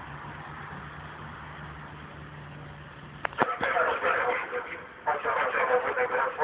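PKP EN57 electric multiple unit arriving: a steady distant hum as it approaches, then from about three and a half seconds in it draws alongside, much louder, with rapid clatter of wheels over the rails and a steady tone running through it.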